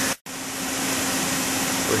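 Steady mechanical hum and hiss of room background noise, cut off by a short dropout to silence at an edit just after the start.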